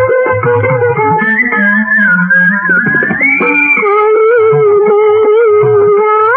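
Music from a 1960s Urdu film song: plucked strings playing a sliding melody over a regular drum beat. The drum drops out for a couple of seconds mid-way and then comes back.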